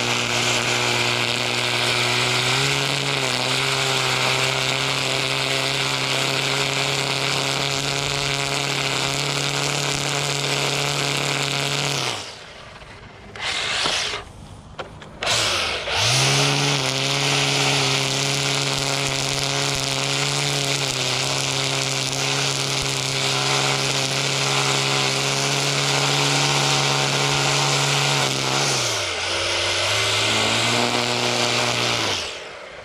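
Husqvarna 325iLK battery string trimmer with square .080 line, edging grass along concrete: a steady motor whine over the hiss of the spinning line cutting. About twelve seconds in the motor winds down and stops twice in quick succession, then spins back up. Near the end it dips briefly and picks up again.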